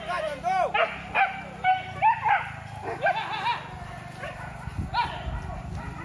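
Hunting dogs barking and yelping in quick, overlapping barks, thickest in the first two seconds or so and sparser after that.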